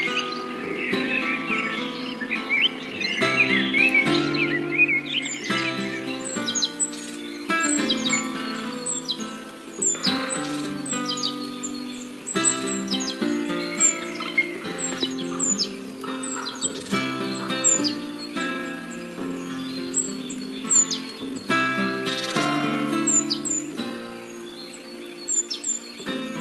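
A nature-film soundtrack: calm music with steady held chords, overlaid with songbird chirping. Short, high chirps recur throughout, with a dense burst of chirping in the first few seconds.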